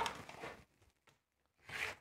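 A section of plastic-bedded model railway track is picked up and handled on a cutting mat, giving one short scraping rustle near the end.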